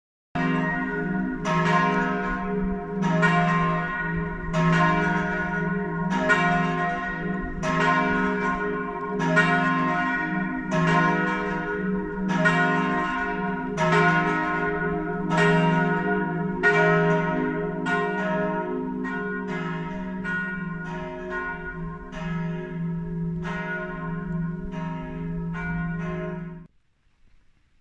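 A church bell tolling, struck about every one and a half seconds, with its deep hum note ringing on under the strikes. In the second half the strokes come closer together and weaker.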